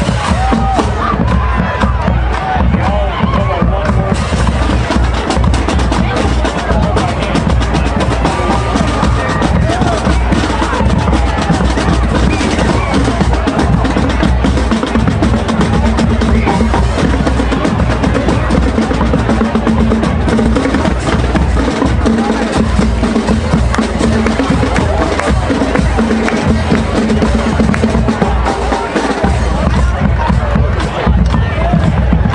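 High school marching band playing: brass with sousaphones over a drumline of snare and bass drums, with drum rolls and long held notes.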